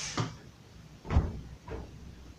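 Dull thuds of a large inflated latex balloon being handled and bumped by hand: a short one near the start, a louder, deep thump about a second in, and a lighter one just after.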